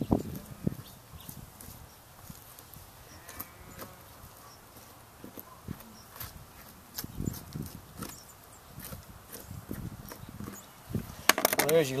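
Knife work on a lamb carcass as the loin is cut and pulled free: faint, scattered small taps and knocks of the blade and the handled meat.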